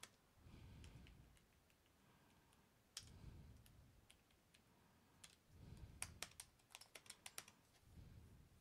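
Faint computer-keyboard typing: a few single keystrokes, then a quick run of about a dozen keystrokes near the end as a terminal command is entered.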